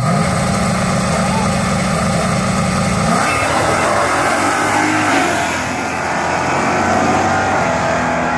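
A drag car's engine revved up and held at a steady high pitch on the starting line, then launching about three seconds in and accelerating hard away down the strip, its pitch climbing through the run.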